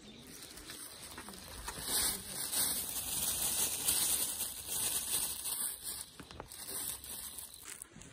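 A thin plastic bag crinkling and rustling as it is handled and filled with sand, loudest from about two to six seconds in.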